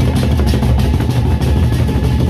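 Gendang beleq ensemble, the Sasak processional drum music of Lombok, playing loud and fast: large barrel-shaped gendang beleq drums beaten with sticks in dense, rapid strokes, with cymbals clashing over them.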